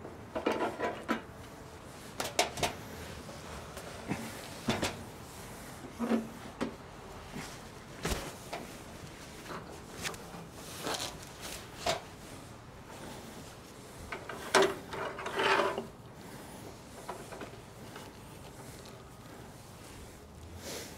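Scattered knocks, clicks and scrapes of a heavy squared timber (cant) being shifted and set on a metal log table, with a longer scraping rub about three-quarters of the way through.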